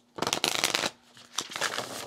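A deck of smooth, matte-finish oracle cards (the Power to Heal Deck) being riffle-shuffled: a quick rush of flicking cards in the first second, then a softer patter as the halves are bridged and pushed back together. The cards riffle freely without clumping or sticking.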